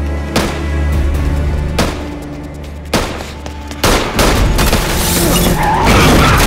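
Film score: a steady low drone broken by four sharp percussive hits about a second apart. From about four seconds in, a louder, dense rush of action sound takes over, with a car racing at speed.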